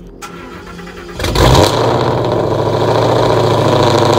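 Ford 5.0 Coyote DOHC V8 in a Mustang GT doing a cold start: the engine catches a little over a second in with a loud flare of revs, then settles into a steady, loud fast idle through the exhaust.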